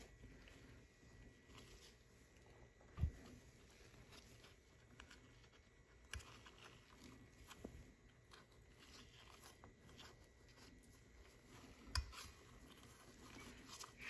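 Near silence with a handful of faint knocks and light rubbing, the clearest about three seconds in: gloved fingers working a rubber piston seal into its groove inside a brake caliper bore.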